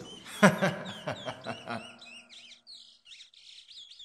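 Small birds chirping in rapid, short, high-pitched chirps, with a voice over them in the first half and only faint chirps after about two seconds in.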